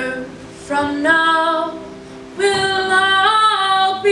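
Two female voices singing together over an acoustic guitar: a short sung phrase about a second in, then a long held note through the second half.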